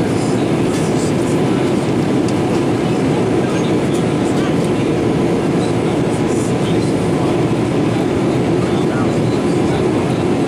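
Steady, unbroken roar of airflow and engine noise heard inside the cabin of a Boeing 787-8 Dreamliner in flight, from a window seat over the wing.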